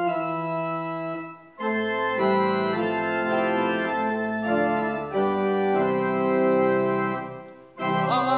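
Organ playing a hymn in held chords, breaking off briefly about a second and a half in and again just before the end.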